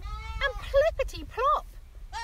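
A woman's voice imitating a goat: a bleating call, then a few short, swooping sound-effect syllables.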